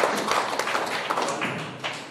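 Applause from a seated audience: irregular hand claps, several a second, dying away toward the end.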